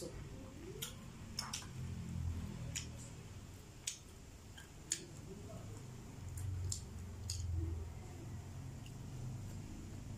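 Close-up eating sounds: a sip of soup from a cup, then chewing, with soft wet mouth noises and a few scattered sharp clicks.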